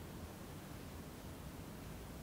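Faint steady hiss over a low rumble: room tone, with no music yet.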